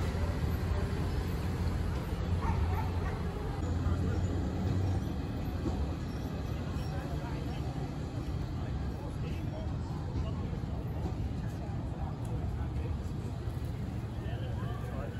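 Busy street ambience: a vehicle's low engine rumble for the first five seconds or so, then easing, over a steady hum of traffic and indistinct voices of passers-by.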